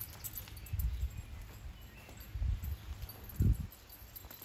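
A few soft, low thumps, spaced a second or more apart, from footsteps on grass and the handheld camera being carried.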